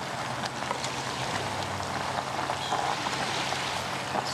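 Portable gas camp stove burner hissing steadily under a pot of boiling ramen, with a few faint clicks of chopsticks stirring the noodles.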